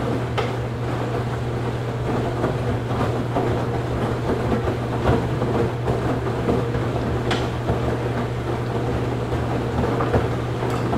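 Washing machine running: a steady low motor hum under a continuous rough churning noise from the turning drum, with a couple of short clicks.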